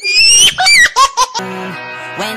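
Loud, high-pitched squealing laughter in a few rising and falling cries, then music comes in about one and a half seconds in.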